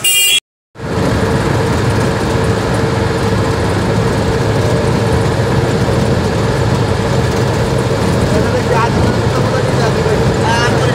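Steady engine and road noise heard inside a moving bus on the highway, strongest in the low end with a faint steady hum. At the very start a short loud sound is cut off abruptly by a brief silence.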